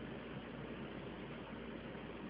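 Faint steady background hum and hiss of room noise, with no distinct taps or footsteps.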